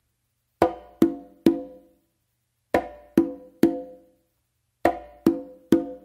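Conga played by hand: a closed slap followed by two ringing open tones. The three-stroke figure is played three times, about two seconds apart. It is the closing figure of a mambo tumbao.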